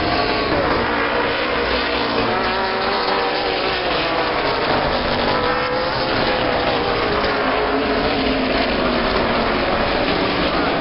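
Several late model stock cars racing together, their V8 engines at high revs, the pitch of each rising and falling as they lift and accelerate through the turns.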